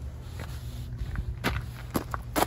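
Footsteps on gravel: a few faint steps over a steady low background rumble.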